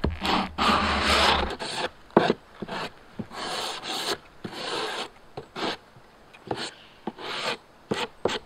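Sandpaper rubbed by hand along the edge of a melamine-faced plywood part: a series of rasping strokes of uneven length, the longest in the first second or so, with light knocks between strokes.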